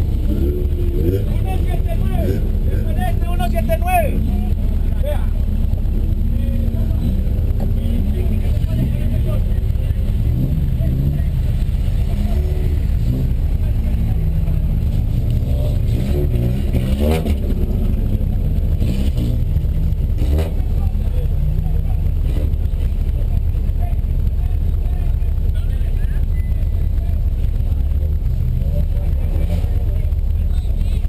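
1979 VW Golf GTI race car's four-cylinder engine idling steadily, a constant low rumble heard from inside the cabin, with indistinct voices over it now and then.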